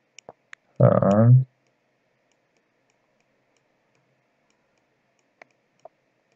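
A few faint clicks from the pointing device used to hand-write Chinese characters on screen: three near the start and two near the end. About a second in there is one short, drawn-out vocal syllable.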